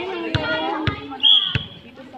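A volleyball bouncing on a concrete court: three sharp smacks a little over half a second apart, over the chatter of players and onlookers.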